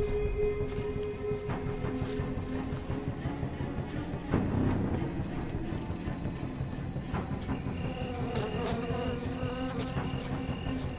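Evening forest insects, cicadas or crickets, in a high steady buzzing drone that cuts off suddenly about three-quarters of the way in. A regular insect chirping, about two chirps a second, follows. Low film music runs underneath, with a dull thud a little before halfway.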